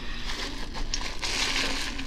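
Plastic bags crinkling as they are handled, loudest in the second half.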